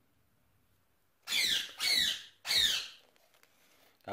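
Three short, high-pitched chirps of a budgerigar, each sweeping down in pitch, coming one after another between about one and three seconds in.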